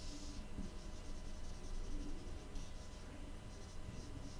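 Marker pen drawing on a whiteboard: faint, rapid squeaky strokes, busiest in the first half.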